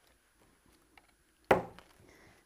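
Faint handling of paper pieces, then a single sharp tap on the work surface about one and a half seconds in, dying away quickly.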